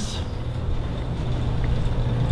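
Steady low hum under a continuous rumbling hiss, slightly louder toward the end, with no distinct events: background noise in an empty room.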